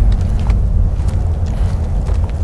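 Deep, uneven low rumble, loud and continuous, with faint scattered ticks above it.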